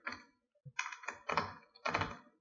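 Computer keyboard being typed on: several uneven keystrokes as a line of text is entered.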